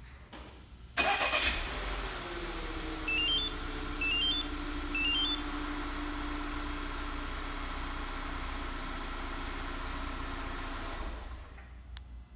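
2015 VW Tiguan's 2.0-litre turbo four-cylinder engine remote-started: it cranks and catches about a second in, then idles, its speed easing down as the high start-up idle settles. Three short rising three-note chimes sound a few seconds after the start, the start confirmation of the Compustar two-way remote.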